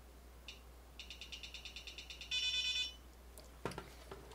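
Small electronic speaker beeping as the AlphaSmart Dana's contrast buttons are pressed: one short beep, then a rapid train of beeps at about ten a second, then a brief, louder beep with several tones.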